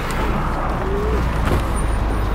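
Steady traffic rumble from a stopped car with its rear door open, as passengers climb out.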